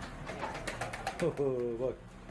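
A man's drawn-out "oh" about a second in, after a quick run of light clicks.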